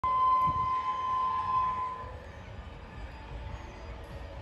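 Horn of an approaching express train's locomotive: one long, steady, shrill note lasting about two seconds, then dropping away and leaving a low rumble underneath.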